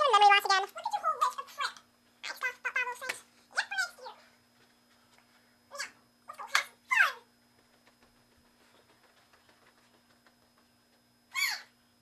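A cat meowing repeatedly: high-pitched, mostly falling calls, several in the first few seconds, a few more around six to seven seconds in, and one near the end.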